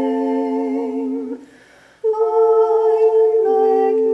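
A voice chanting a slow meditative melody in long held notes. It stops for a brief pause at about one and a half seconds and comes back in at two seconds.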